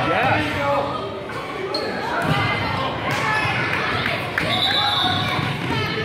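Basketball bouncing on a hardwood gym floor among indistinct voices of players and spectators, echoing in the large gymnasium.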